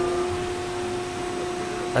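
FAMAR Fullroll CNC plate bending roll running in its automatic cycle, a steady machine hum with one constant tone over a noise haze as a roll axis moves to its next position.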